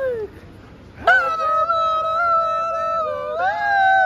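A man's voice holding long, loud drawn-out notes, with a short break about a second in; the pitch steps up shortly before the end.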